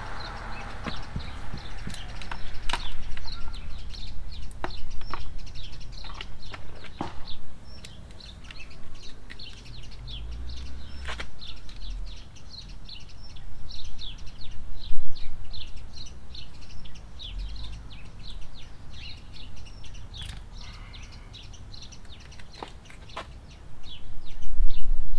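Small birds chirping rapidly and repeatedly in the background, with a few sharp clicks and knocks from hand work over a steady low rumble.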